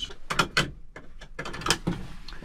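Seat belt being handled and fastened in a small aircraft cockpit: strap rustling and a few sharp clicks of the metal buckle.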